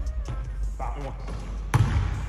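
A basketball bouncing on a hardwood gym floor, with one sharp, loud bounce near the end. A voice and background music with a steady bass run underneath.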